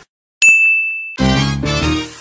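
Dance music cuts off into a brief silence, then a single clear, high ding sounds for just under a second before the next song in the mashup comes in with loud chords.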